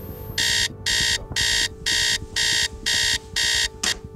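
Bedside digital alarm clock beeping: about seven shrill, evenly spaced electronic beeps, roughly two a second, cut off just before the end as it is switched off.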